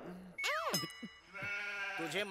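Comic sound effect from the film's soundtrack: a quick falling pitch slide with a bright shimmer about half a second in, then a steady held tone near the end.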